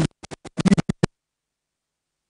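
A voice over the sound system breaks up into rapid stuttering fragments as the audio keeps dropping out, then cuts to dead silence about a second in.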